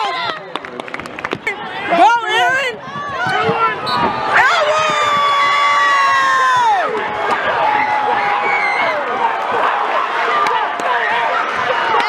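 Basketball game in an arena: crowd noise and shouting voices, with short high sneaker squeaks on the court early on. About four seconds in comes one long, high-pitched yell, held for over two seconds before it falls away.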